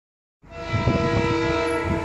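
Horn of twin WDG4 (EMD) diesel locomotives: a multi-tone chord that starts abruptly about half a second in and is held steady for about a second and a half, with a low rumble underneath.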